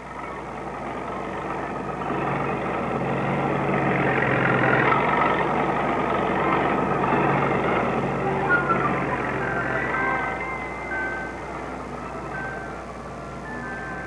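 Aircraft tow tractor's engine running steadily while towing, a droning sound that swells toward the middle and fades near the end.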